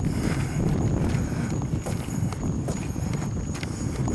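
Footsteps and handheld-camera handling noise as a person walks outdoors, an irregular low rumble with scattered light knocks. A faint steady high-pitched tone runs beneath it.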